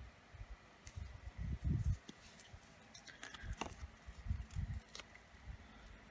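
Small handling sounds of paper planner stickers being peeled off a sheet and pressed onto the page: scattered light clicks and ticks, with a few dull taps of hands on the planner and desk about one and a half seconds in and again near four and a half seconds.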